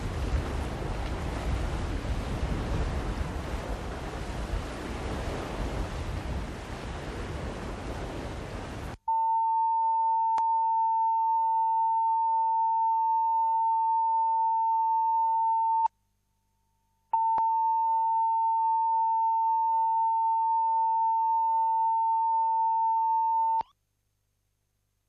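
Wind rushing on the microphone with sea noise, cut off abruptly after about nine seconds by a steady single-pitch test tone of about 1 kHz, typical of videotape line-up tone. The tone drops out for about a second, then resumes and stops shortly before the end.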